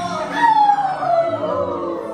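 Wolf howls: a long falling howl starts about half a second in and overlaps shorter rising-and-falling howls, over background music.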